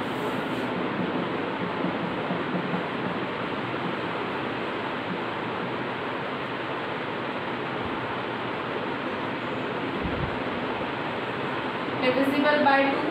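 Steady, even rushing background noise with no speech, holding a constant level throughout, and a soft low thump about ten seconds in.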